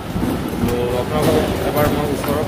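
Steady rumbling din of a busy fish-cleaning hall, with clatter and voices in it.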